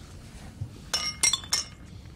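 Drinking glasses clinking together in a toast: a quick run of several bright, ringing clinks about a second in.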